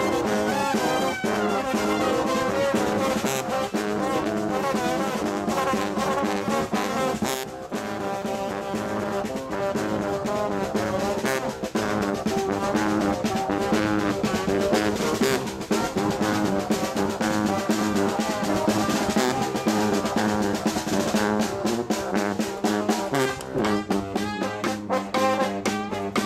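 A brass band playing lively music while marching, with trombone, trumpet and saxophone over a steady beat.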